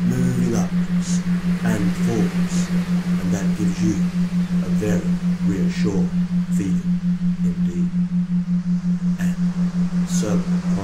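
A steady low electronic tone pulsing evenly about six times a second, the kind of pulsed tone laid under hypnosis recordings. Faint, indistinct voice-like murmuring runs beneath it.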